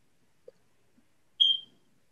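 A single short, high-pitched electronic beep about one and a half seconds in, fading quickly, in an otherwise near-silent pause.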